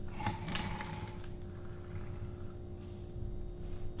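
A plastic measuring cup scooping dry oats from a plastic container: a few light scrapes and rattles in the first second or so, and a faint one later, over a steady background hum.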